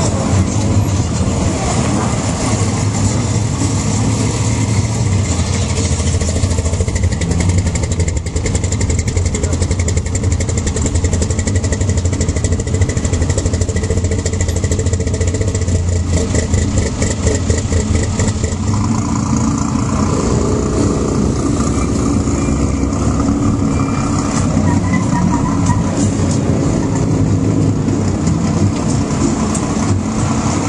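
Off-road race trucks' engines running loudly at low revs as the trucks creep forward, a dense low rumble whose tone shifts about two-thirds of the way through.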